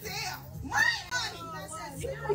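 Raised women's voices in a heated argument, with a steady low room hum behind.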